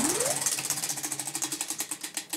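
Prize wheel spinning, its pointer flapper clicking over the pegs in a rapid run of ticks that grows fainter and a little slower as the wheel loses speed.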